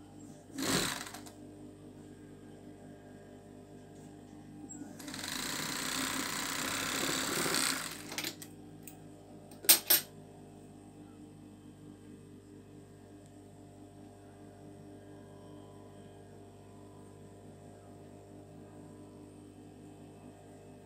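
Industrial overlock (serger) machine stitching a seam: a short burst of stitching about half a second in, then a steady run of about three seconds from around five seconds in. Two sharp clicks follow just before ten seconds, with a steady low hum underneath throughout.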